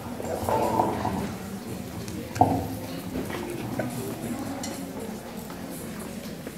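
Hall noise from a school band settling on a stage before playing: low murmuring voices and small knocks, with one sharp knock about two and a half seconds in.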